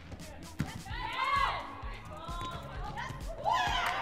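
Indoor volleyball rally: the ball is struck several times with sharp slaps, and shoes give short, wavering high-pitched squeaks on the court floor.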